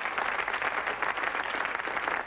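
Studio audience applauding, a dense steady clatter of many hands clapping.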